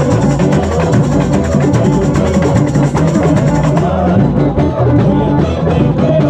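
A carnival comparsa's batucada drum section playing a loud, steady, driving rhythm on hand-held drums, with a sustained melody line over the drumming.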